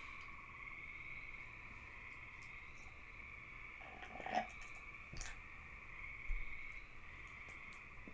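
Faint steady night chorus of frogs and insects, a fine unbroken trill, with a few soft clicks about halfway through.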